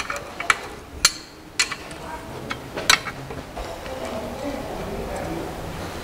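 A few short, sharp metallic clicks and clinks, about five in the first three seconds, as the bolts holding a clutch pressure plate are loosened. A low, steady background murmur fills the rest.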